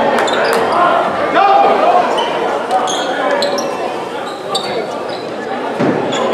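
Basketball game sounds in a gymnasium: a ball bouncing on the hardwood court, short high squeaks of sneakers on the floor, and a steady background of crowd and player voices.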